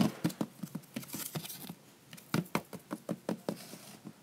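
Light, irregular taps and knocks, a few per second, with a brief hiss about a second in.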